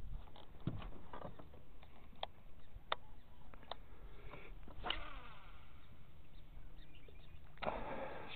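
Scattered sharp clicks and knocks of a fishing rod and reel being handled and made ready for a cast, over a steady low hum. A louder rush of noise comes near the end.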